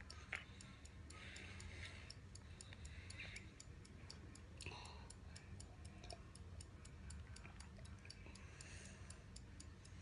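Faint, fast, even ticking from a phone's countdown timer, about four ticks a second, as a one-minute timer runs down.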